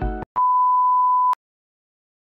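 A single steady electronic beep lasting about a second, a pure tone like a censor bleep, after a clip of music cuts off abruptly.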